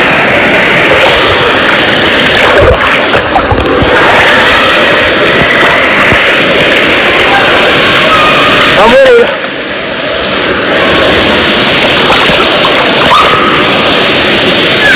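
Water splashing and sloshing close against a phone's microphone held at the water's surface, with voices in the background. About nine seconds in the sound briefly turns muffled and quieter.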